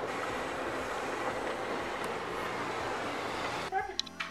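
Automatic car wash heard from inside the car: a steady rush of water spray and wash brushes scrubbing against the glass and body. It cuts off abruptly near the end, replaced by music.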